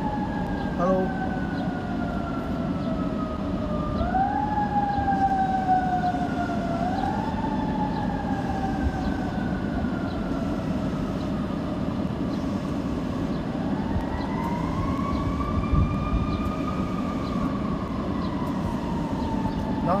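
An emergency-vehicle siren wailing, its pitch sliding slowly down, jumping back up twice, then swelling up and falling away again in the second half. Under it is the steady low hum of the idling car and street traffic.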